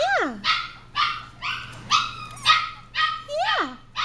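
Small Goldendoodle puppies yapping over and over, about two short barks a second, a few drawn out into a rising-then-falling yelp.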